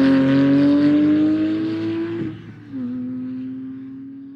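Sports car engine pulling hard on a race circuit, its pitch climbing steadily. About two seconds in there is a brief drop at a gear change, then it runs on at a steady pitch and fades away.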